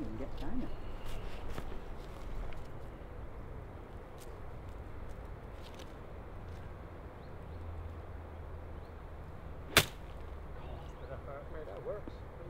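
A golf club striking a ball out of rough grass: a single sharp crack near the end, over a quiet outdoor background.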